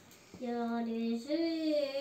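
A child's voice singing two long held notes, starting about half a second in, the second note higher than the first.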